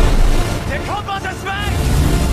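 A deep rumble of heavy storm surf and a breaking wave, then a wordless cry or shout that rises and falls, about a second in.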